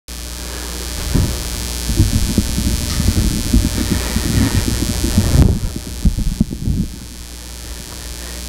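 Rustling and irregular low thumps of a person getting up and walking, picked up close on a microphone, over a steady hiss that drops away about five seconds in.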